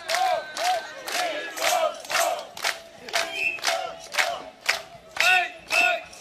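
A group of voices shouting short rhythmic calls together, about two a second, during a break in samba drumming with the drums silent.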